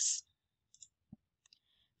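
A pause in a narrator's voice: near silence broken by a few faint, short clicks.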